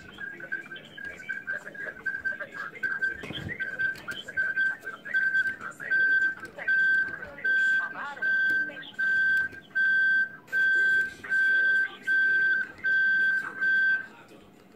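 Card-sized mobile phone sounding a high electronic tone through its speaker, uneven at first, then turning into regular beeps about one and a half a second that cut off suddenly at the end: the battery running flat just before the phone shuts down.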